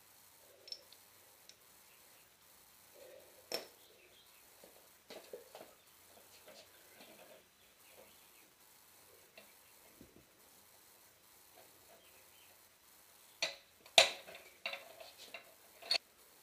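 Sparse metallic clinks and taps of hand tools and suspension hardware being handled at a car's rear hub, with a cluster of sharper knocks near the end, one of them clearly the loudest.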